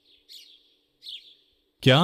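Birds chirping faintly: two short chirps, each dropping in pitch, about a second apart, over a faint steady hum.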